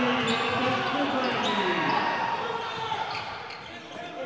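A basketball being dribbled on a hardwood court in a large, nearly empty gym, with a few sharp ticks and players' voices calling out on the court.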